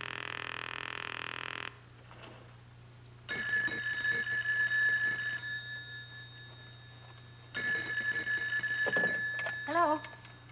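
Push-button desk telephone ringing twice, each ring about two seconds long, the two starting about four seconds apart. Before the rings there is a steady tone lasting under two seconds, and a woman's voice comes in at the very end.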